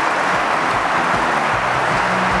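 Audience applauding, with music carrying a low bass line coming in under it about half a second in.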